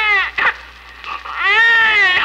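Newborn baby's first cry just after birth, a lusty cry of protest: one wail ending, a short cry, then a second long rising-and-falling wail about halfway through.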